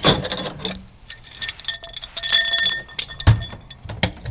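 Metal tube table legs clinking against each other and ringing with a clear metallic tone as they are handled, with a heavy knock about three seconds in.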